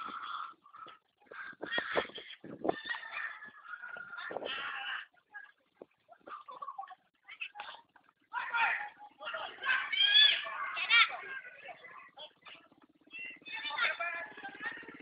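Voices shouting and calling on a futsal court, loudest about eight to eleven seconds in, with a few sharp knocks about two seconds in.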